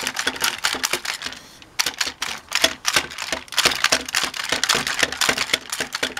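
Plastic AT-ST toy from the 1990s Power of the Force line working its button-driven walking action: rapid plastic clicking and clacking as the legs step, with a brief pause about a second and a half in.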